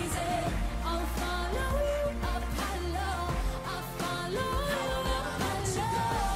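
Pop song with a female lead vocal: held notes and slides over a steady bass and drum beat.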